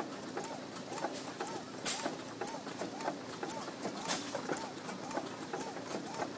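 International Harvester 10-horse Mogul antique gas engine running, with a sharp firing crack twice, about two seconds apart, and a rhythmic rising-and-falling squeak about twice a second between them.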